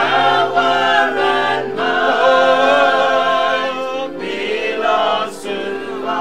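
Men's voices singing a hymn together, unaccompanied, in long held notes.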